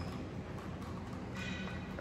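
A stirrer turning a drink in a clear plastic cup, tapping lightly against the sides, over a low steady hum.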